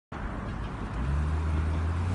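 BMW E92 M3's V8 engine running at a low, steady engine speed; its low hum grows louder about a second in and then holds steady.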